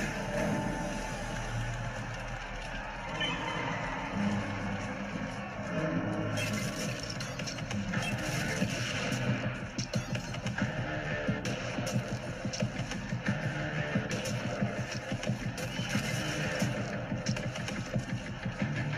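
Film soundtrack music with a dense mix of sound effects; from about six seconds in, many sharp hits and knocks come thick and fast over the music.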